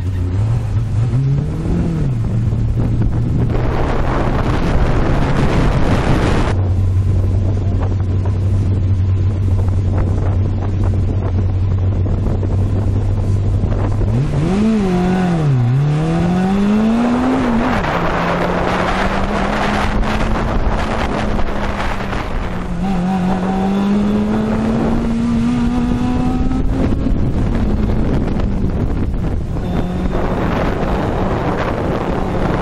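Fiat 850 Spyder's rear-mounted four-cylinder engine being driven hard through an autocross course, heard from the open cockpit with heavy wind on the microphone. The engine note holds steady for several seconds, swings quickly up and down around the middle as the driver lifts and gets back on the throttle, then climbs slowly through the later part.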